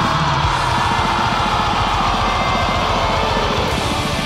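Atmospheric black metal: a dense wall of distorted guitars over rapid drumming.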